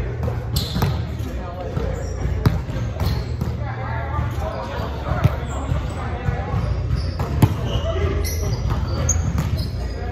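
Volleyball being played in a large, echoing gym: about half a dozen sharp smacks of hands and arms on the ball and of the ball landing, the loudest about two and a half, five and seven and a half seconds in, with players' indistinct shouts and calls.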